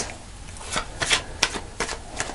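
Tarot cards being handled and laid on a cloth-covered table: about five short, sharp flicks and slaps of card stock.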